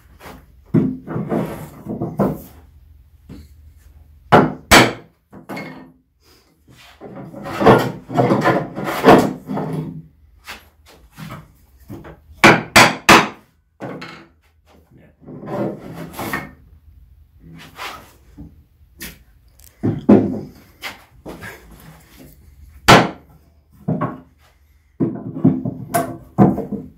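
Irregular wooden knocks and clunks on a workbench: a steel holdfast is struck down into the bench to clamp a board, and wooden blocks and tools are set down on the bench.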